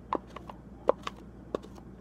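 A spoon scraping and tapping inside a plastic ice-cream cup to get the last of the sauce out: about five short, sharp clicks at uneven intervals, the loudest about halfway through.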